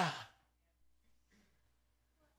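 The end of a man's spoken phrase fading out, then a pause of near silence: faint low room hum with a soft breath about halfway through.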